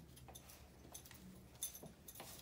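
Near silence: room tone with a few faint, short clicks, the sharpest a little past halfway.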